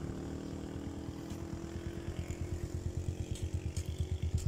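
Motorcycle engine running on the road, a low steady beat of about eight pulses a second that grows louder toward the end as it draws nearer.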